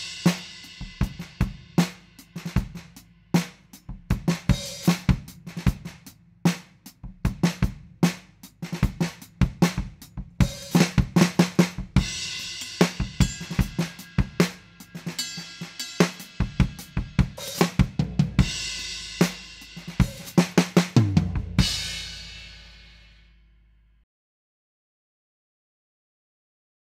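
A drum kit played with thicker, heavier Promark FireGrain Rebound 5B drumsticks: kick drum, snare and cymbals in a repeated beat. It finishes about 21 seconds in with a last hit whose cymbal rings out and fades over a few seconds.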